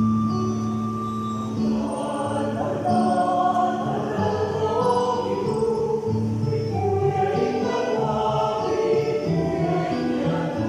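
A mixed choir of men's and women's voices singing together, holding long notes.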